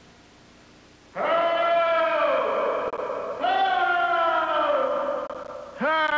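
A man's voice wailing in alarm: two long cries starting about a second in, each falling in pitch, and a third beginning near the end.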